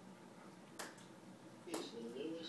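Two sharp finger snaps, about a second apart, in a quiet room.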